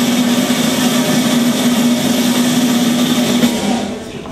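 A drumroll played over the public-address speakers: a steady, loud rumble over a low hum, building suspense before a winner is announced. It cuts off just before the end.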